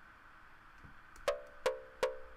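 Sequenced synthesizer notes from a Reaktor Blocks modular patch start about a second and a quarter in. An oscillator is gated by a low pass gate and triggered by an 8-step sequencer, giving short plucked notes on one repeated pitch, each with a click at its start, about every 0.4 s. Before that there is only faint room tone.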